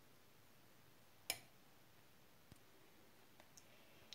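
Near silence: quiet room tone, broken by one short sharp click about a second in and a couple of faint ticks later.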